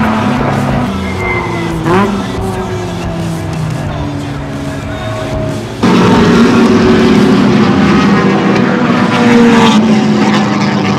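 Race car engines running on a circuit, with a brief pitch swoop about two seconds in; the sound jumps suddenly much louder about six seconds in.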